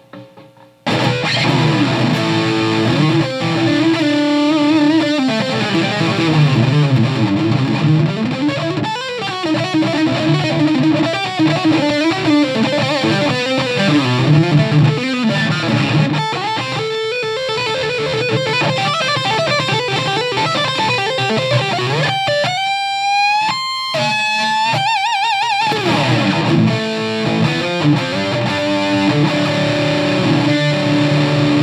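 Ibanez JS24P electric guitar on its middle pickup setting, blending the bridge humbucker and the neck pickup, played through a Hughes & Kettner TubeMeister 36 tube amp: a melodic passage starting about a second in, with a run of high, gliding notes about three-quarters through. The tone is warm rather than Strat-like.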